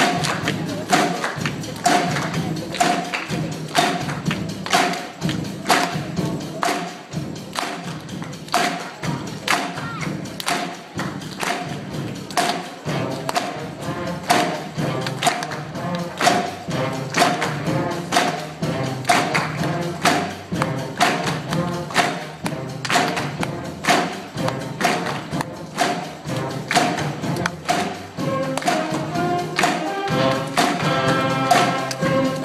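School concert band playing an upbeat piece, with the audience clapping along in time on a steady beat.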